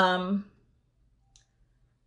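A woman's voice finishing a word in the first half second, then a pause with one faint short click about a second and a half in.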